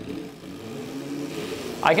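Electric Crazy Cart drift kart pulling away, its drive motor giving a low steady hum that grows slightly louder.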